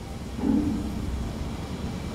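A pause in a man's talk: steady low room rumble picked up by a lapel microphone, with a short, low, faint voice sound about half a second in.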